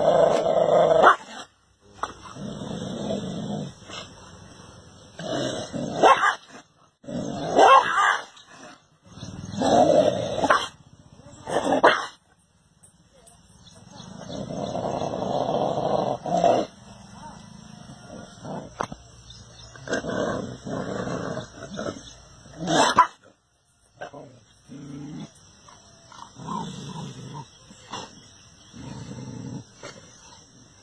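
Dogs growling and barking across a run of short clips, each cut off suddenly by the next.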